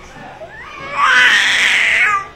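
Baby crying: a faint rising whimper, then a loud high wail about a second in that lasts about a second.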